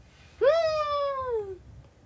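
A single drawn-out, meow-like vocal call lasting about a second, rising quickly in pitch and then sliding slowly down.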